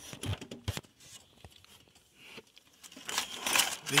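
Handling noise from connecting cables at the back of a desktop PC: a few light clicks and knocks, then a louder rustling scrape near the end.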